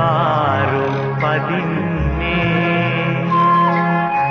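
Recorded Sinhala political song with instrumental backing. A held note wavers with vibrato in the first second, then the accompaniment continues, with a sustained melody line entering near the end.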